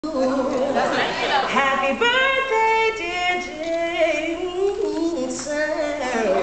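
A woman singing solo without accompaniment, holding long notes and sliding through vocal runs.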